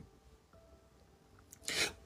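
Near silence in a pause between a woman's sentences, then a brief soft breathy noise near the end as her talk resumes.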